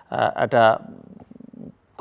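A man speaking briefly, then trailing into a low, creaky hesitation sound from the throat, a quieter run of rapid rattling pulses lasting under a second.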